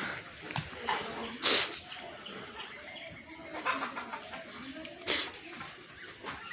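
Calf snorting close to the microphone: two short, noisy exhalations, a loud one about one and a half seconds in and a softer one about five seconds in, with faint shuffling in between.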